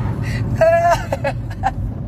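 A high voice calls out briefly, holding one note for a moment about half a second in, over a steady low rumble.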